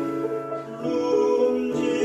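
Tenor singing a classical song in operatic style, with grand piano accompaniment. He breaks off at the start for a breath, the piano carries on alone for under a second, and then he comes back in with a new phrase.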